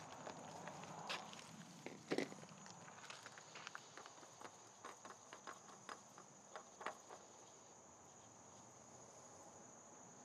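Faint clicks and light knocks from a spin-on oil filter being unscrewed by hand from its threaded mount on a 2019 Subaru WRX engine and lifted off. A louder knock comes about two seconds in, and the small ticks stop about seven seconds in.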